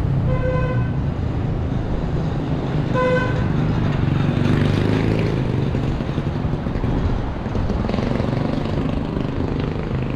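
Two short honks of a vehicle horn, about half a second each and two and a half seconds apart, over the steady rumble of street traffic.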